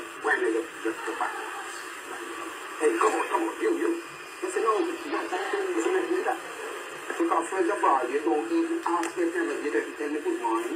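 A man talking in a television studio interview, heard through a TV set's speaker: thin, tinny speech with no low end. The recogniser wrote none of it down.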